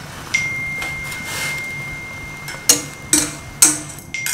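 Cooking at a stove: a metal utensil clinks against a pan five times over a steady hiss. A steady high ringing tone starts about a third of a second in and holds.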